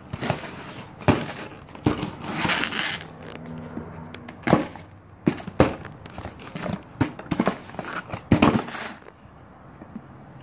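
A cardboard shipping box being cut open: packing tape slit and torn, with scraping, crinkling and a string of sharp knocks as the box is handled.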